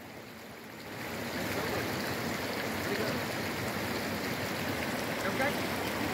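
Steady rush of flowing stream water, a little quieter for about the first second, then holding at one level.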